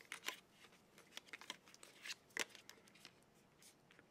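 Faint clicks and scratches of a phone battery being pried out of its plastic compartment and handled by fingers, with a sharper click about two and a half seconds in.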